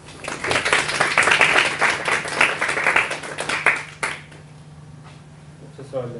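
Audience applauding for about four seconds, then dying away, over a steady low hum in the room.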